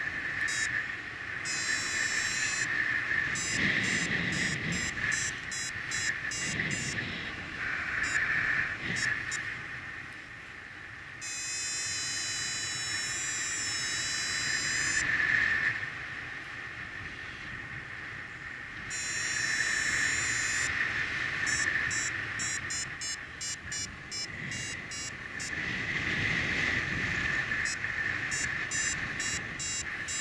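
Paragliding variometer beeping in runs of short beeps that speed up and slow down, with one long unbroken tone near the middle, the sign of the glider climbing in ridge lift. Wind rumbles on the microphone underneath.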